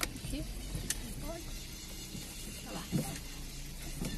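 Car driving slowly over a cobblestone street, heard from inside the cabin: a steady low rumble from the engine and tyres on the stones, with a few light knocks.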